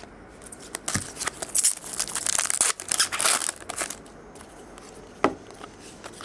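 Foil baseball-card pack wrapper being torn open and crinkled for about three seconds, followed by a single sharp click near the end.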